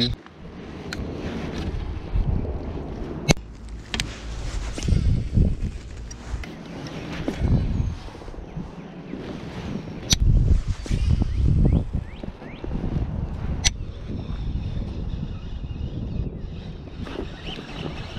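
Wind rumbling on the camera microphone and handling noise against an inflatable kayak, broken by a few sharp clicks several seconds apart.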